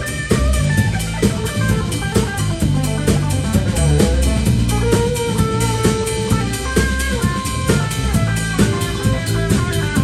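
Live band playing: a drum kit keeps a steady beat with a strong electric bass under it, while an electric guitar plays a melodic line of single notes.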